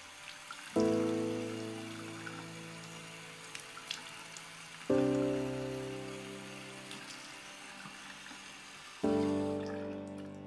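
Slow score of sustained piano chords, three struck about four seconds apart, each fading away. Under them is the steady rush of a bathroom tap running into a sink as hands splash water.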